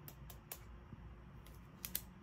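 A few faint, sharp clicks, two of them close together near the end, over quiet room tone.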